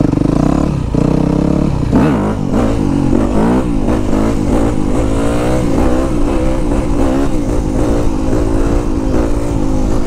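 2010 Yamaha YZ250F's single-cylinder four-stroke engine revving hard under load, its pitch rising and falling over and over as the throttle is worked through the gears and into a wheelie.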